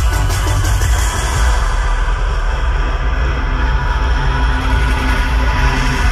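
Bass-heavy electronic dance music played live over a festival stage's sound system, loud and dense, with a deep, steady sub-bass throughout.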